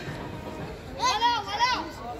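A high-pitched voice calling out twice, two short rising-and-falling cries about a second in, over faint outdoor background.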